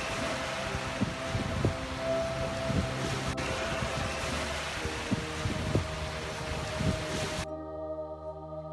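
Light single-engine propeller plane droning as it flies low overhead, with a steady engine tone, over wind buffeting the microphone and breaking surf. It cuts off suddenly near the end, giving way to soft music.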